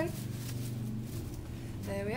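A rubber-gloved hand rummaging among paper name slips in a cloth apron pocket, a faint rustle over a steady low room hum. A woman's voice rises briefly near the end.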